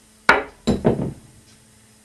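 A cloth draped over a beer-mat disc, standing in for a bottle, knocked down on a wooden tabletop. There is one sharp knock about a third of a second in, then two softer ones just under a second in.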